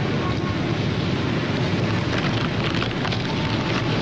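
Steady, fairly loud noise with a low rumble underneath, unbroken and without distinct events.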